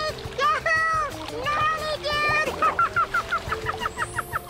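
A high, falsetto puppet voice giving wordless rising-and-falling cries like "whoa", then a quick run of short giggles in the last second and a half, over cheerful background music.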